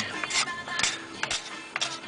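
Hand strokes of a blunt steel cabinet scraper along a wooden guitar neck, about two rasping strokes a second, taking off fine scratch marks before sanding. Music plays faintly underneath.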